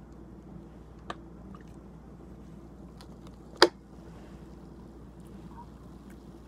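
Man drinking mixed orange soda from a plastic bottle: mostly quiet sipping, with a soft click about a second in and one sharp, loud click about three and a half seconds in, over a low steady room hum.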